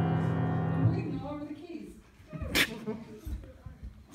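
A piano chord ringing out and dying away over the first second and a half, followed by low voices and a single sharp click.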